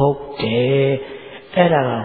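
Speech only: a monk's male voice delivering a sermon in Burmese in an intoned, chant-like way, with one syllable held for about half a second.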